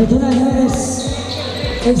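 Basketball being dribbled on a court floor, heard under background music with a deep bass-drum beat about twice a second and a voice over it.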